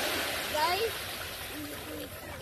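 Small waves washing up onto the beach and water splashing around children wading in the shallows, with short bits of children's voices mixed in.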